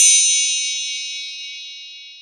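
A bright, high chime sound effect, several high tones ringing together and fading away slowly.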